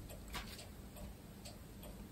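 Faint, irregular light clicks and taps of small objects being handled on a cluttered table.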